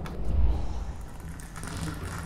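Sound-effect rumble of ground cracking apart: a deep rumble that swells about half a second in and then fades, with scattered small crackles of breaking rock.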